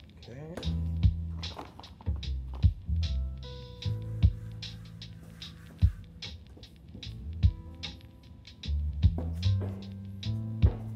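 Background music with a steady beat: held bass and chord tones, a low thump about every second and a half, and quick ticks in between.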